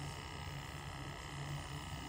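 Boyu D-200 battery-powered aquarium air pump running with a faint, steady hum.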